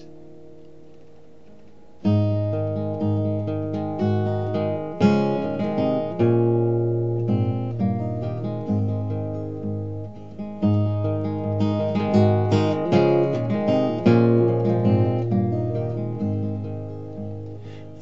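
Steel-string acoustic guitar played fingerstyle as a song introduction: a faint chord rings out and fades, then about two seconds in the playing begins in earnest, with picked notes over a repeating bass line.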